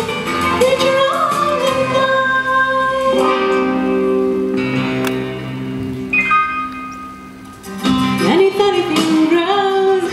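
A woman singing a song into a microphone over instrumental accompaniment. About three seconds in the music settles into steady held notes that grow quieter near the seven-second mark, then her singing comes back in with sliding pitches about eight seconds in.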